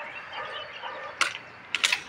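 Sharp metallic clicks from a hand tool working on sheet-metal roofing: a single click just past a second in, then a quick cluster of three or four louder clicks near the end.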